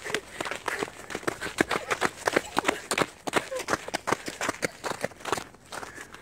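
Two people running flat out on the crusted salt of a salt flat, their boots crunching in quick, uneven footfalls.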